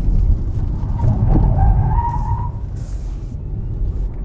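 Cupra Born electric hatchback cornering hard, heard from inside the cabin: a steady low rumble of road and tyre noise, with a rising tyre squeal lasting about a second and a half in the middle.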